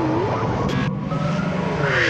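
Modular synthesizer sound effects: several tones glide up and down over a steady low drone. A short burst of hiss comes about two-thirds of a second in, and another near the end.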